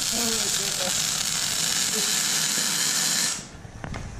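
Electric arc welding on steel: a steady, loud crackling hiss that cuts off suddenly about three seconds in as the welder stops.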